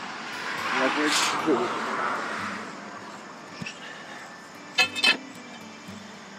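A car going by on the road: a rushing tyre-and-engine noise that swells during the first second or two and fades away. Near the end come two sharp knocks in quick succession.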